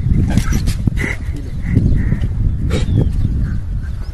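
Several street dogs making short yelps and barks, over a steady low rumble.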